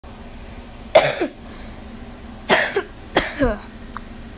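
A person's voice making three short, sudden bursts, about a second in, near two and a half seconds and just after three seconds, each dropping in pitch.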